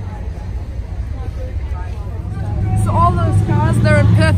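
A steady low rumble runs under people talking. A close voice starts speaking about two and a half seconds in and grows louder toward the end.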